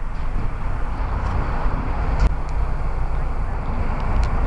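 Steady outdoor rumble of road traffic, with wind buffeting the microphone, swelling around the middle as a vehicle passes and with a short knock a little past two seconds in.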